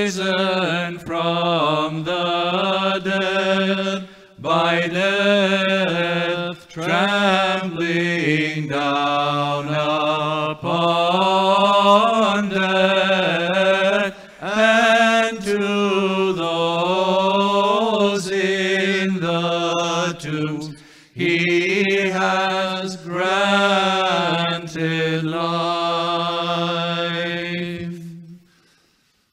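A single male voice chanting an Orthodox liturgical hymn in Byzantine style, in long, slow, ornamented phrases broken by short breaths.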